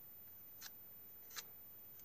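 Near silence broken by two faint, short scrapes about a second apart: a chisel-blade hobby knife spreading knifing putty across a plastic model car body.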